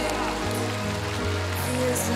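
Instrumental backing of a pop ballad, its bass stepping between held notes, under a steady hiss of audience applause.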